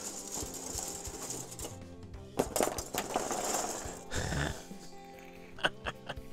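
Clatter and rustle of a handful of plastic Subbuteo goalkeeper figures being handled on bubble wrap, with scattered clicks, over soft background music.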